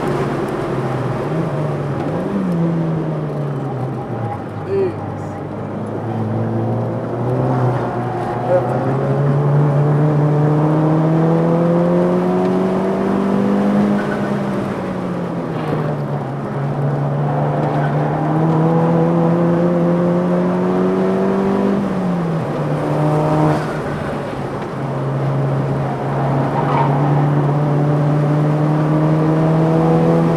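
Engine of a track-tuned 2007 VW Mk5 GTI at high revs, heard from inside the cabin. Its pitch climbs slowly as the car pulls and drops sharply a few times: early on, about halfway, and about two-thirds through. It then holds fairly steady near the end.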